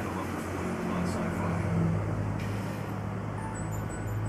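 Low, steady mechanical hum with a rumble underneath, swelling a little between about one and two seconds in.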